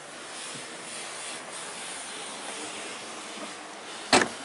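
Steady hiss of background noise with faint rustling, and no distinct events.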